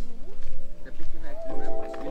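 Background music: a song with a singing voice over sustained instrumental tones and a steady beat.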